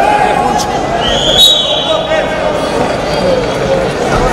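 Indistinct voices and chatter of people in a sports hall, with a brief high whistle that rises in pitch about a second in.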